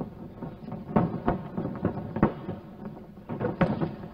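Irregular sharp slaps and thumps from two fighters in a ring, about six or seven of them, the loudest about a second in and just past two seconds: strikes landing and feet on the ring canvas.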